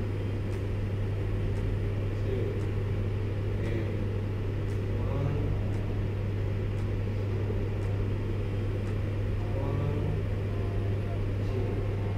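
A steady low hum under a rumble of room noise, with a few faint, murmured voices at times.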